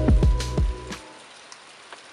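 Guitar music fading out about a second in, leaving water dripping off a mossy rock overhang into a pool: faint scattered drips over a soft wash of water.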